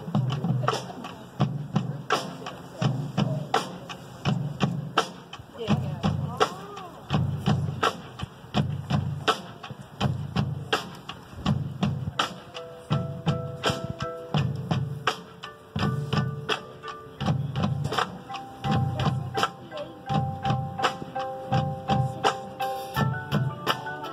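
Marching band show opening: a steady, repeating beat of low thuds with sharp clicks on top, joined about halfway through by held pitched notes from the front ensemble.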